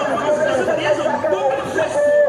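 Several voices talking at once: unintelligible chatter, with one voice holding a drawn-out note near the end.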